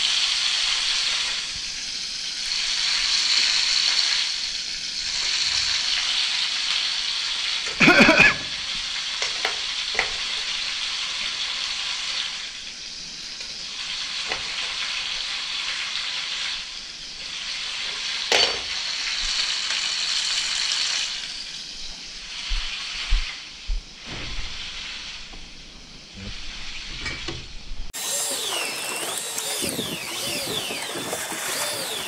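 Food sizzling steadily in hot oil in a frying pan, with a few sharp knocks, the loudest about eight seconds in, and light knife taps on a plastic chopping board later on.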